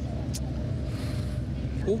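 Steady low rumble of background noise, with a brief click about a third of a second in; a man's voice starts speaking near the end.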